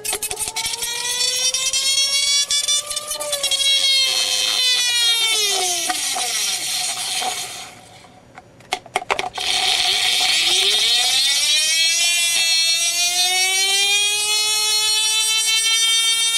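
Rodin-coil double-pulse sphere motor whining as its magnet sphere spins, the pitch gliding up and down with the spin speed. A little past halfway the whine falls in pitch and almost dies away, with a few sharp clicks, then it spins back up and the whine climbs again.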